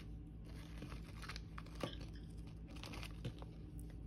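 Faint crinkling of a small plastic zip-lock bag, with scattered light clicks of small plastic LEGO pieces being handled.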